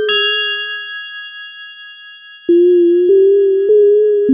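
Electronic keyboard music: a bell-like synth chime is struck at the start and rings out, fading over about two seconds. About two and a half seconds in, low sustained synth notes come in, a new note roughly every 0.6 seconds.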